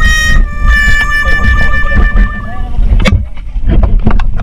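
A long, held two-note horn-like tone, sagging slightly in pitch, over a low wind-and-water rumble; it stops about three seconds in with a splash as the camera goes into the sea, and the sound turns muffled.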